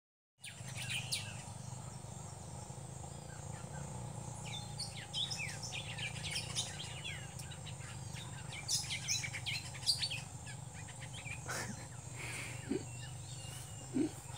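Several wild birds calling and chirping in tropical scrub at dusk, with quick high notes coming thickest in the middle. A steady, high, thin insect drone runs underneath.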